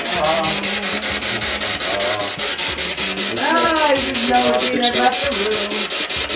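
Spirit-box radio sweep playing through a small handheld speaker. The static is chopped in a fast, even rhythm, with brief snatches of voices and music as it skips between stations. Ghost hunters listen to these snatches as replies from spirits.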